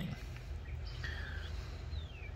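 Faint bird calls: a couple of short whistled notes and a falling note near the end, over a low steady hum.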